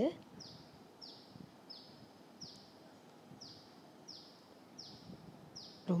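A bird calling over and over, faintly: a short, high, falling whistle repeated evenly about every three-quarters of a second, over a low background hiss.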